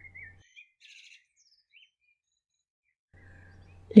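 Faint bird chirps: a few short, high calls in the first couple of seconds.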